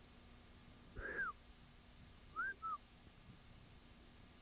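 A sled dog whining: one short rise-and-fall whine about a second in, then two shorter ones in quick succession a little past halfway.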